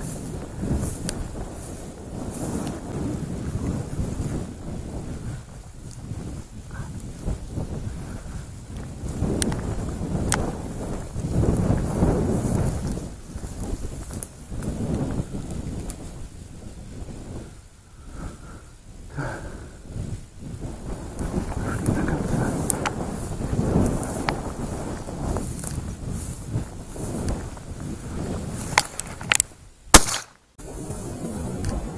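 Wind buffeting the microphone in uneven gusts, with the brushing of dry grass and weeds as the hunter walks through them.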